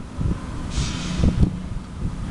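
Low rumbling noise on the microphone, with a brief high hiss about a second in.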